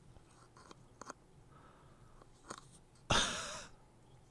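Faint clicks and taps of a clear plastic display stand being fitted to a die-cast starship model. About three seconds in comes a much louder, short rasping burst that fades over about half a second.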